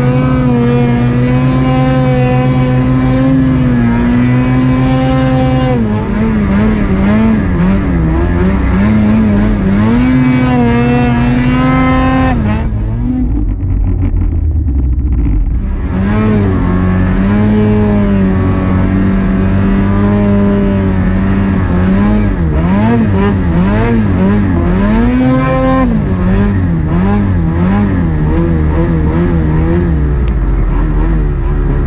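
Snowmobile engine running hard at high revs, its pitch rising and dipping as the throttle changes. For a few seconds around the middle the sound turns muffled.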